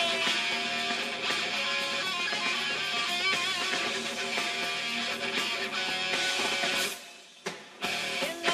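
Heavy metal band playing an instrumental passage: a lead electric guitar with bending, wavering notes over bass and drums. The band breaks off briefly about seven seconds in, then comes back in.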